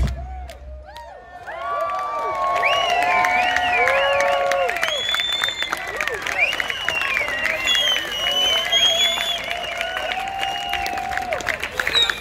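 Bass-heavy music over a PA cuts off at the start. After a short lull, an outdoor crowd breaks into cheering, with many overlapping voices whooping and shouting and some clapping.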